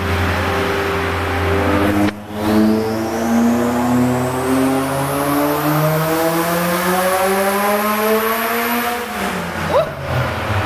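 Turbocharged Honda F20B 2.0-litre four-cylinder making a dyno pull. After a brief dip, it revs smoothly and steadily upward for about seven seconds with a high turbo whistle climbing alongside, then lets off and the revs fall near the end, with a short sharp chirp.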